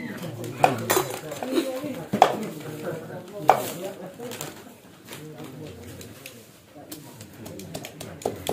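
Cleavers chopping cooked meat on a wooden chopping block: irregular sharp knocks, loudest in the first half, fainter near the end.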